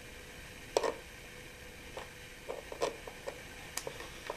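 Hand screwdriver driving a wood screw into a wooden chair frame: a few irregular small clicks and creaks as the screw is turned, the loudest about a second in.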